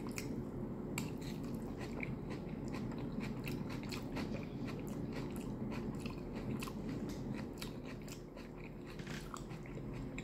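Close-up chewing of a mouthful of crunchy coleslaw and rice: many small crisp crunches and clicks in quick succession, over a steady low hum.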